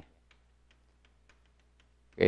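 Near silence broken by several faint ticks of chalk tapping and scratching on a blackboard as a word is written.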